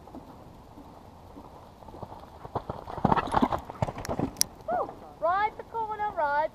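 Hoofbeats of a ridden horse on a sand arena, coming closer and loudest as it passes near the ground-level camera about three to four seconds in. Then a person's voice calls out near the end.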